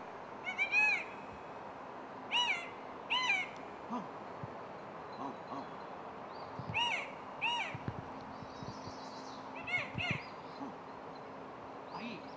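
A bird calling: short, high, arched calls, mostly in quick pairs, repeated about six times, with a few soft knocks in between.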